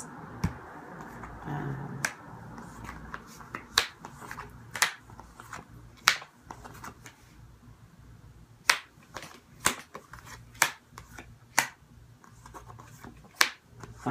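A deck of reading cards being handled on a tabletop: a soft rustle in the first two seconds, then a series of sharp snaps as cards are flicked or laid down, about one a second in the second half.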